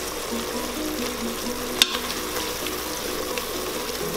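Red wine sizzling and bubbling in the hot steel inner pot of an Instant Pot on its sauté setting as it deglazes the pan, a silicone spatula scraping the bottom, with one sharp click about halfway through. Soft background music plays along.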